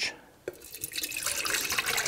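Molten beeswax pouring from a stainless steel pot into a small metal pouring pitcher: a steady liquid stream that grows louder as the pitcher fills. A light knock comes about half a second in, just as the stream starts.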